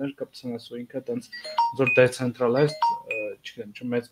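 Men talking over a video call while a short two-note electronic chime, a lower note then a higher one, sounds twice about a second apart, like a notification ding.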